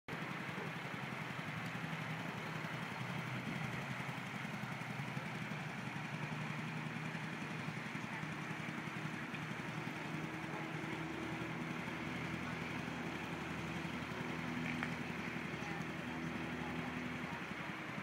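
Honda scooter's small engine running under way, mixed with a steady rush of wind and road noise. The engine hum grows more distinct from about halfway through.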